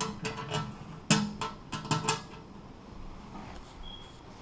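Small metal clinks and taps of screws being handled and set into the holes of a mailbox's perforated base, about a dozen in the first two seconds, the loudest just after one second. Near the end comes a single short high beep, a smoke alarm chirping for a low 9-volt battery.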